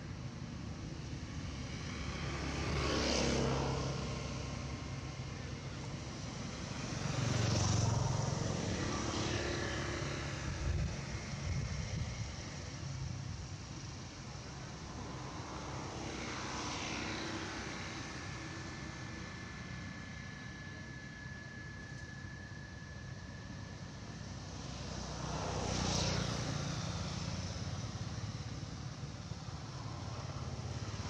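Motor vehicles passing by one after another: four times a sound swells up and fades away over a few seconds, over a steady background rumble.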